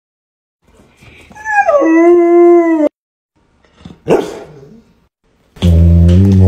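Golden retriever vocalizing: a howl that slides down and then holds a steady pitch for about a second, and a short falling yelp around four seconds in. Near the end it starts a low, wavering grumble, its 'vroom'.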